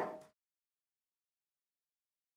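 Dead silence, after the fading end of a single clack of the magnetic plastic robot cubes being handled, which dies out within the first quarter second.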